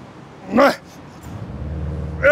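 A man's short strained cry of effort, pitch rising then falling, about half a second in, as he presses dumbbells overhead. A low traffic rumble swells near the end.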